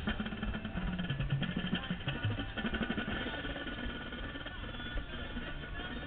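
Drum and bugle corps brass playing, with low notes shifting over the first two or three seconds and then holding more steadily and a little quieter.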